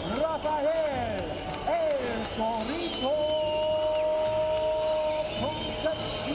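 A singing voice in a music track, sliding and bending between notes, then holding one long note for about two seconds, over background crowd noise.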